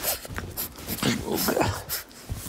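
French bulldog puppy vocalizing in play, with a few short calls that bend up and down in pitch, mostly in the second half.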